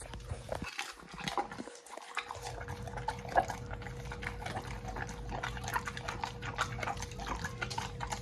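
XL American Bully dog chewing a raw sardine: a quick, irregular run of smacking and chewing clicks.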